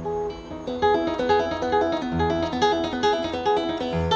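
Solo nylon-string classical guitar played fingerstyle, starting at the very beginning: a steady run of plucked notes over held bass notes.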